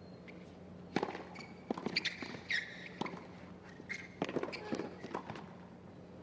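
Tennis ball struck by rackets in a point on a hard court: a serve, then several sharp return and volley hits about a second apart, with footsteps and brief shoe squeaks between them.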